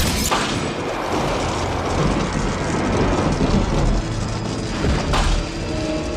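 Film sound effects of a large fire: a dense, low rumble of flames under a music score, with a sudden burst about five seconds in.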